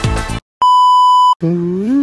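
The tail of a news-style theme music cuts off, and after a short gap a single loud, steady electronic beep sounds for under a second. About a second and a half in, a man starts singing 'do, do' with a sliding pitch.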